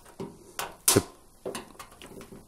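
Plastic drain-hose clip being pinched and pushed into its slot on a washing machine cabinet: a few small clicks and knocks, the sharpest about half a second in.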